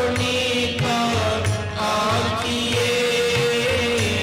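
Sikh Gurbani kirtan: harmoniums holding steady chords under a male voice singing the shabad, with tabla keeping a rhythm of low drum strokes.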